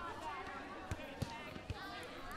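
Gym ambience: background voices from other people in the room, with about three short, dull thuds in the second half, like weights being set down.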